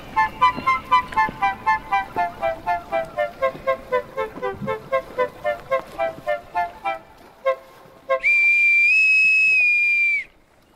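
A short tune of evenly spaced notes, about four a second, first falling in pitch and then rising, stops about seven seconds in. About eight seconds in, a brass bosun's call is blown: one long, high, steady tone that rises slightly and drops away as it ends.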